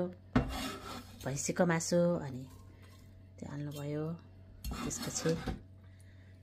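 Sliced tomatoes scraped off a plastic cutting board and dropped into a metal cooking pot, with knocks and kitchen clatter, under intermittent talking.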